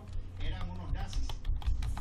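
Computer keyboard typing: a quick, irregular run of key clicks as a terminal command is erased and new text typed.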